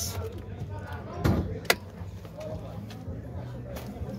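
A short rustle and knock, then a single sharp click about halfway in as the bonnet release lever of a Mitsubishi Pajero is pulled from the driver's seat, over a low steady hum.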